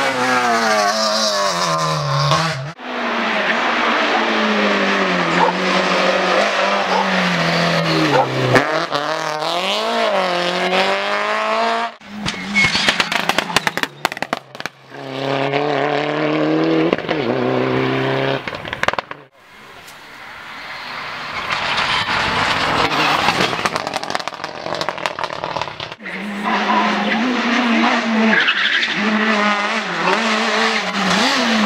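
Rally cars driven flat out on a tarmac stage, one after another, with abrupt cuts between the passes. Each engine's pitch climbs and drops back through the gear changes. About twelve seconds in there is a stretch of rapid crackling.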